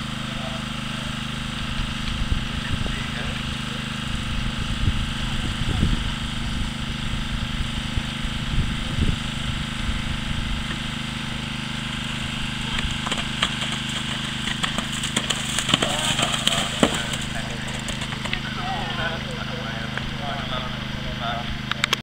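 A steady low engine-like hum runs throughout, with faint, indistinct voices in the background that come up most near the end, and a few scattered knocks.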